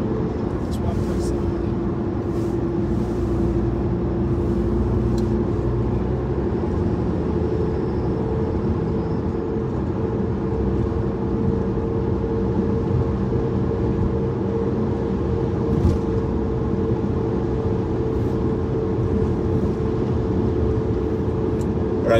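Steady road noise inside a car's cabin while driving at highway speed: a constant low rumble of tyres and engine with a steady hum.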